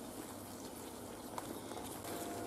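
Thick mushroom sauce made with evaporated milk boiling faintly in a frying pan as it is stirred with a wooden spoon, with a light tap about a second and a half in.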